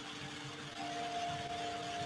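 Slow ambient background music of long held notes over a faint hiss, with a new, higher note entering just under a second in.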